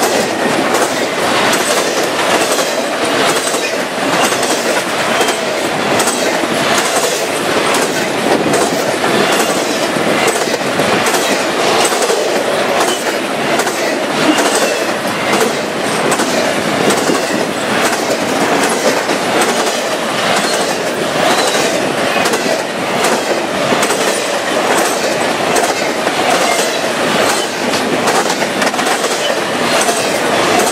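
Double-stack container train rolling past close by: a steady rush of steel wheels on rail, with a regular clicking of wheels over the rail.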